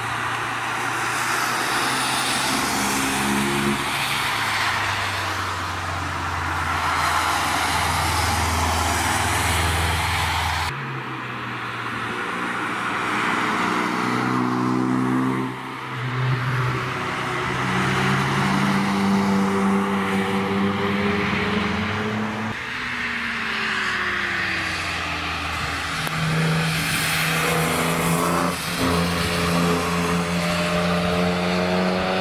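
Sports cars driving hard past on a race track one after another, engines revving up and down through the gears. In the first part the engine comes with a steady hiss of tyres on wet tarmac, and the sound changes abruptly to a different car about eleven seconds in.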